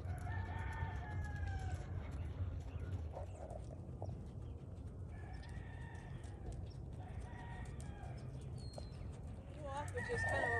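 A rooster crowing several times, each call long and slightly falling in pitch, over a steady low hum.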